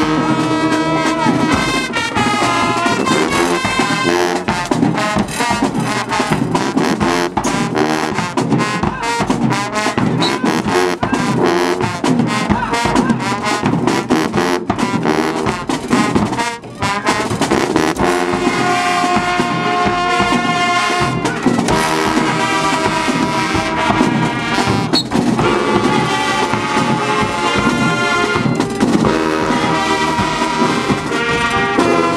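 A marching band's trombones, trumpets, saxophones and clarinets playing a loud stand tune over percussion, with a brief break about halfway through.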